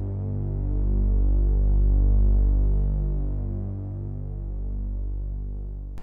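Sustained low synthesizer drone with a slow pulsing beat in its tone, swelling and then fading, cutting off abruptly at the end: the tail of the intro music.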